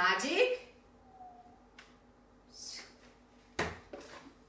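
A short vocal sound, then quiet with a faint click and a soft rustle, and a sharp single knock near the end as a cardboard box of markers is set down on a desk.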